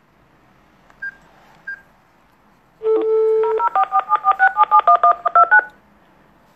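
Phone dialing a call: two short high beeps, then a steady dial tone about three seconds in, followed by a rapid string of about fourteen touch-tone (DTMF) dialing tones.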